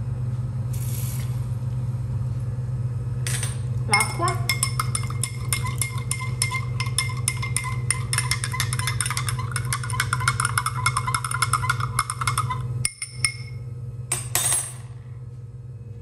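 A metal spoon stirring baking soda into water in a drinking glass, clinking rapidly against the glass from about four seconds in for some eight seconds, over a steady low hum.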